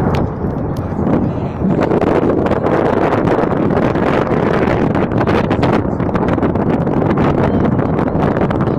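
Salvo of Grad (BM-21) multiple rocket launcher rockets firing: a continuous loud rushing roar packed with rapid sharp crackling reports, heavier from about two seconds in.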